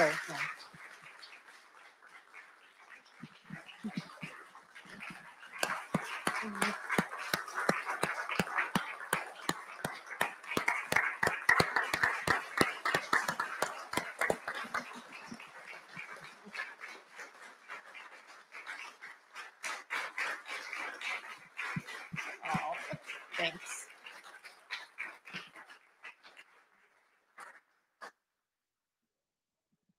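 An audience clapping and talking among themselves. The clapping starts about four seconds in, swells twice, and dies away near the end.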